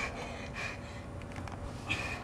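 Quiet, short pained breaths and gasps, a few in two seconds, from a young man who has just broken his foot.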